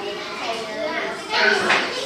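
Several children talking over one another, a busy hum of young voices.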